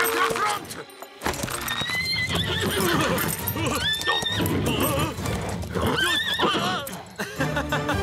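Cartoon horses neighing several times, with hoofbeats and background music.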